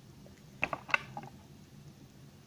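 Thin clear plastic orchid pot clicking and creaking as it is handled and moved into position, a handful of sharp clicks over about a second.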